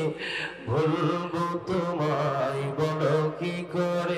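A young qari's unaccompanied voice chanting in long, ornamented melodic phrases, with held notes that waver in pitch. There is a short breath about half a second in.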